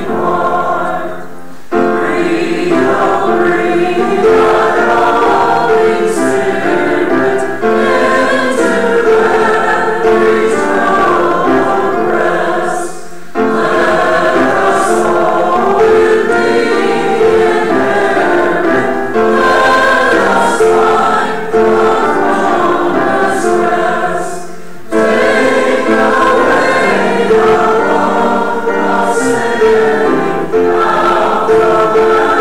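Choir and congregation singing a hymn together, with short breaks between lines about a second and a half, thirteen seconds and twenty-five seconds in.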